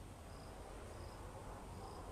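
An insect chirping faintly, short high chirps repeating every half second or so, over quiet room hiss.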